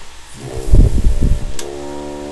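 Single F French horn, a Conn Director: a loud, rough, low blast of air lasting about a second, then a click and a steady held note starting near the end.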